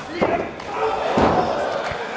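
A heavy thud about a second in, of a wrestler's body hitting the wrestling ring mat, and a smaller thump just before the end. Crowd voices shout around it.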